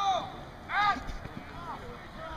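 Two short, distant shouts from players on a rugby pitch, one at the very start and one a little under a second in, over a low outdoor background.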